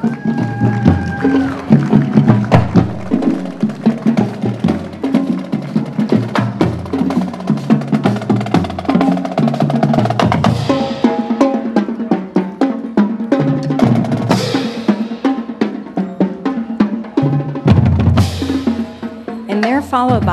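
High school marching band playing as it marches: a drumline of snare and bass drums beating steadily, with brass horns playing over it.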